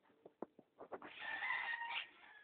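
A rooster crowing, starting about halfway through and held for about a second. Before it, a few light flip-flop footsteps on concrete.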